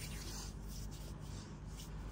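Hands rubbing together to spread a freshly sprayed dry body oil over the skin: a quiet, soft rustling.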